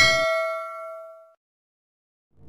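A bell-like chime at the end of a music sting rings out with several overtones and fades away over about a second, then silence.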